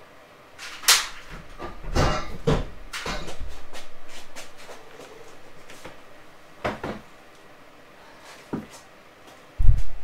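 Knocks, clunks and scraping as a car seat is lifted out and moved about on a garage floor. There is a sharp knock about a second in, a longer rattling scrape from about three to five seconds, and a few more bumps later.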